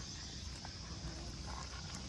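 Quiet pasture background: a steady low rumble of wind on the microphone with a few faint, soft taps.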